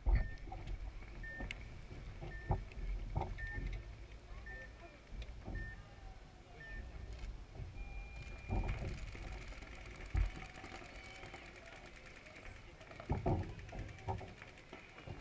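An electronic game-start countdown: short high beeps about once a second, seven in all, then one longer, higher beep about eight seconds in that signals the start of the point. Dull low thumps are heard now and then, the loudest near the start and about 13 seconds in.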